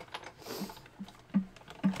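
Sizzix Big Shot die-cutting machine being hand-cranked, its gears clicking and knocking about two to three times a second as the magnetic platform and cutting pads feed through the rollers, die-cutting a star from foil cardstock.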